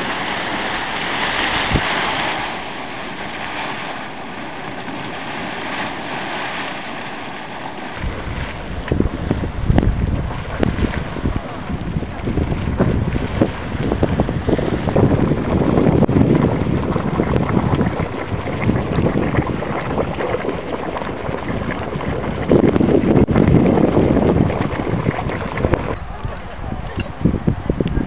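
Steam hissing steadily from a Yellowstone geyser vent. About a third of the way in, after a cut, a small spouting hot spring splashes and gurgles unevenly, with wind buffeting the microphone.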